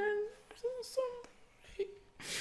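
A man humming a few short, separate notes of a tune to himself.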